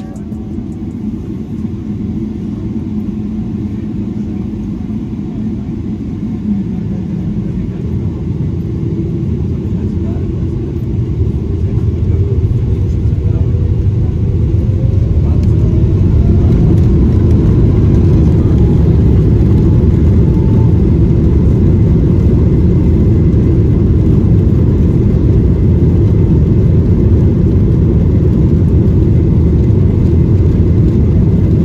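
Boeing 777-300ER's GE90 engines heard from inside the cabin, spooling up to takeoff thrust. The rumble grows louder over the first fifteen seconds, with a rising whine about ten seconds in, then holds steady and loud through the takeoff roll.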